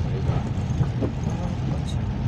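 Steady low rumble of a car driving through shallow floodwater on the road, its engine and tyres heard from inside the cabin.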